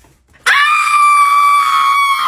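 A person screaming: one long, high-pitched scream held at a steady pitch, starting about half a second in.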